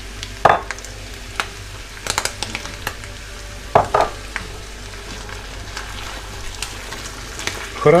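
Pork, mushrooms and beans frying in a nonstick pan with a steady sizzle while a silicone spatula stirs them, scraping and tapping against the pan now and then.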